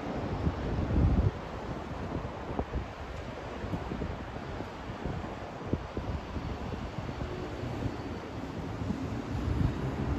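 Wind buffeting the phone's microphone in irregular low gusts, loudest about a second in, over a steady distant hum of city traffic.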